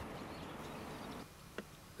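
Faint background hiss that drops away just past halfway, with one short, soft click about one and a half seconds in.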